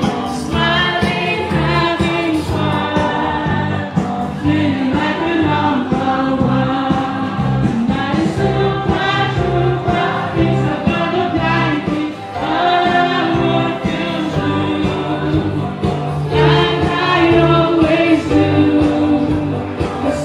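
A woman singing into a handheld microphone over amplified backing music with a steady bass beat.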